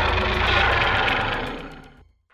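A loud, rough, noisy rumble with a deep low end, edited onto a title card as a sound effect. It holds for over a second, then fades away near the end.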